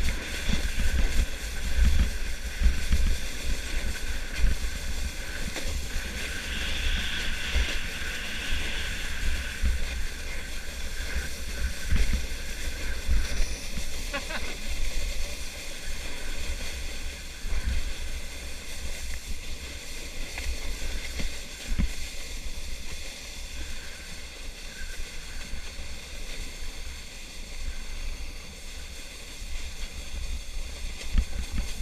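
Sled sliding fast over packed, groomed snow: a steady scraping hiss of the sled on the snow, with wind buffeting the microphone as an irregular low rumble and bumps.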